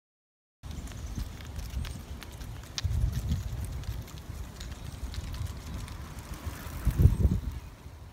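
Wind buffeting an outdoor camera microphone beside a road, a low rumble with scattered light clicks. It swells about three seconds in and again more strongly near the end.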